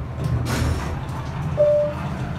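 Elevator's electronic chime: a single short, steady beep near the end, over a steady low hum inside the elevator cab.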